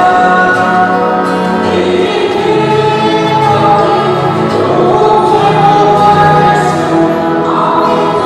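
A choir singing a hymn together, holding long, sustained notes.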